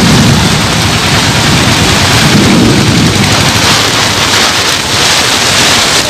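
Heavy rain in a windstorm: a loud, steady hiss of downpour on the road, with low rumbling through about the first half.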